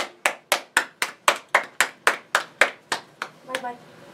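Hand clapping in an even rhythm, about four claps a second, stopping a little after three seconds in.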